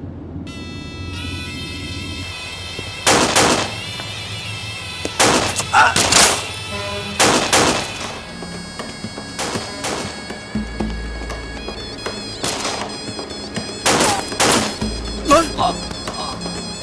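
Pistol shots in a gunfight, about ten of them fired irregularly, some in quick pairs, over sustained dramatic background music.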